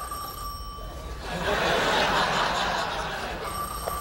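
Telephone ringing with a steady electronic tone, one ring at the start and another starting near the end: a call coming through to the desk phone. Studio audience laughter fills the gap between the rings.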